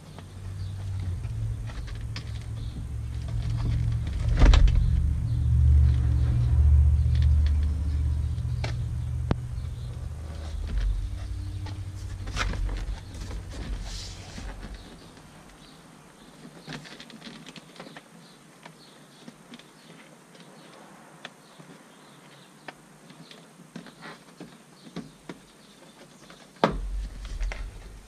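A low rumble that swells over the first few seconds and fades out about halfway through, with scattered light clicks and knocks from the hard plastic door trim panel being handled and lined up against the door.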